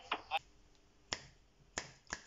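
Two sharp finger snaps, about a second and just under two seconds in, after a brief clipped fragment of voice at the very start.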